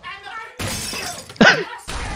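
A crashing, shattering noise lasting under a second, then a short shout, and another burst of noise starting just before the end.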